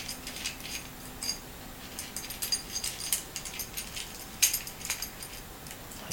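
Small metallic clicks and light scrapes of a brass lamp holder being screwed together by hand, with a sharper click about four and a half seconds in.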